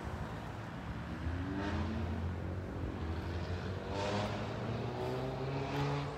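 A motor vehicle engine running nearby, its pitch rising as it accelerates about a second in and again around four seconds in.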